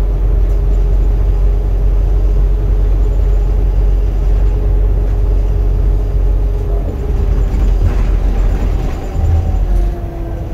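Bus engine and road noise heard from inside the passenger cabin: a loud low rumble with a steady whine running over it. The whine drops a little in pitch near the end.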